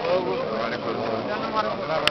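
Several men's voices talking over one another, with no words standing out.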